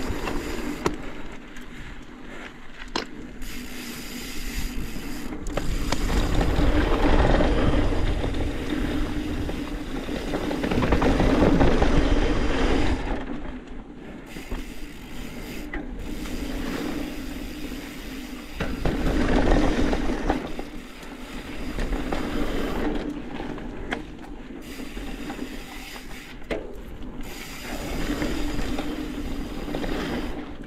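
Mountain bike being ridden over a dirt trail: tyres scraping and crunching on loose ground with rattling from the bike and a low rumble. It grows louder and fades several times as the bike speeds up and slows.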